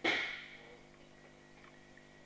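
A single sharp slap right at the start, ringing out briefly in the hall before fading.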